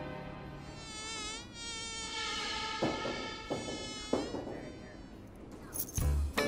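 A high, whining tone with many overtones that wavers in pitch at first, then holds steady and fades out near the end, with three soft knocks in the middle.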